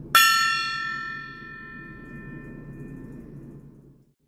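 Small brass tabletop gong struck once with a padded mallet. It rings with many high tones that fade away over about three seconds.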